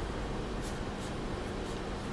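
Steady room noise with a few faint, brief scratching or rustling sounds.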